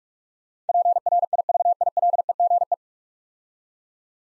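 Morse code sent as a single steady audio tone at 45 words per minute, spelling out the whole nine-letter word 'privilege' in one quick run of dots and dashes lasting about two seconds.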